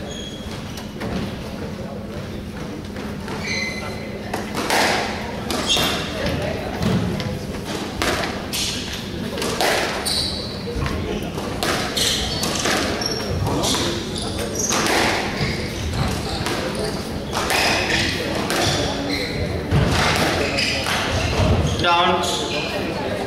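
Squash rally: the ball cracks off the rackets and the walls at irregular intervals of roughly a second, with short squeaks of court shoes on the wooden floor, under a steady low hum.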